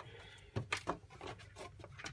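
Faint handling sounds: several light clicks and rustles as a handheld GPS unit and its fabric holster are moved about by hand.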